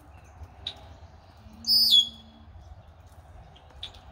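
Male red-winged blackbird singing one song phrase about a second and a half in: a burst of high notes that drops onto a held note. A few short single chirps come before and after it.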